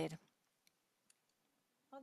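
Near silence with two faint clicks, about two-thirds of a second and a second in, between a woman's voice trailing off at the start and speaking again near the end.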